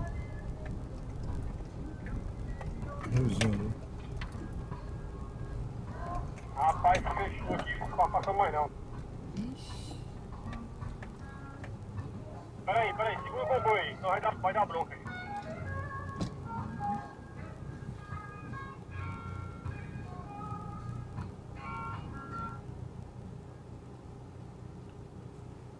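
Off-road vehicle's engine running, heard from inside the cab; the low hum eases off in the second half once the vehicle has stopped. Two loud stretches of wavering voice-like or musical sound rise over it, one a few seconds after the start and one about halfway through.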